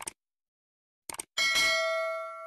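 Click sound effects, one at the start and a quick double click about a second in, then a single bell ding that rings on and slowly fades. This is the stock sound of a subscribe-and-bell animation.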